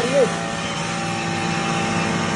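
5 HP double-body stoneless atta chakki (flour mill) running steadily: an even motor hum and whine that holds a constant pitch and level.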